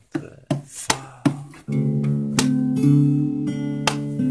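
Acoustic guitar played live: a few separate strums ring out, then steady strummed chords start a little under two seconds in, the instrumental intro of the song.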